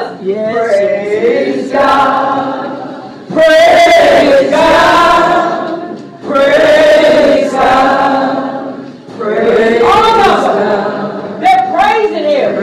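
A woman singing through a microphone in long, held phrases with vibrato, each separated by a brief breath, with no accompaniment heard.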